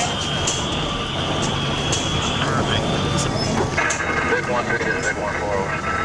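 Armored military truck driving over rough desert ground: steady engine drone and road noise with scattered light rattles and clicks.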